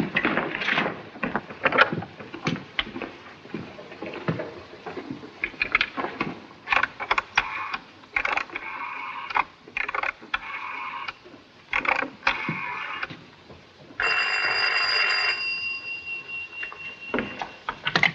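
A coin-box wall telephone being handled, with a run of small clicks and knocks followed by stretches of rasping noise. About fourteen seconds in, a telephone bell rings loudly for a little over a second.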